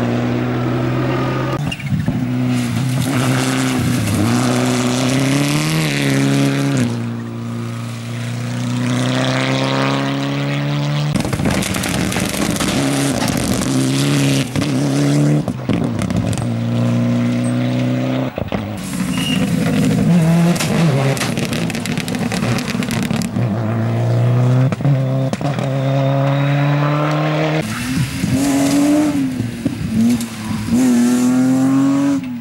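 Several rally cars in turn revving hard through a loose-surface corner: engine pitch climbs steeply, cuts off and falls again with each gear change and lift.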